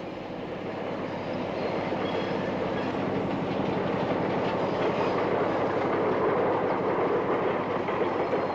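A train running on a metre-gauge railway, its noise getting steadily louder as it comes nearer.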